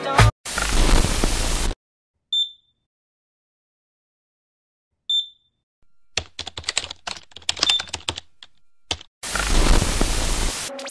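Sound effects for a production ident. A short burst of hiss is followed by two brief high beeps a few seconds apart, then a run of rapid typing-like clicks. A loud burst of TV static comes near the end.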